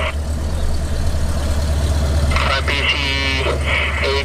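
A steady, loud low drone of machinery. A man starts speaking a radio call about two and a half seconds in.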